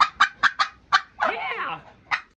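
Domestic turkey calling: a run of five short, sharp calls, then a longer warbling gobble a little past the first second.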